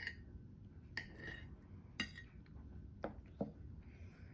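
Table knife clinking and scraping against a plate while cutting food: about five sharp clinks, roughly a second apart, the last two close together.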